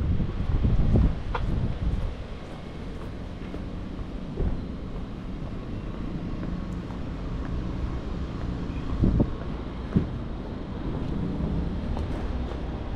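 Steady low engine hum of a vehicle idling at the curb, getting a little stronger near the end as it comes close, with gusts of wind buffeting the microphone about a second in and again near the end.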